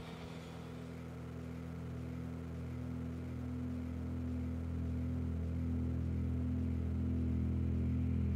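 A low, sustained drone of several steady pitches from a black metal/sludge recording, slowly swelling louder.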